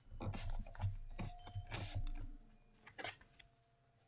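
Cardstock being pressed and rubbed down over a stencil in a cardboard box, then peeled off: a run of short paper rustles and scrapes over the first two seconds, with one more brief rustle about three seconds in.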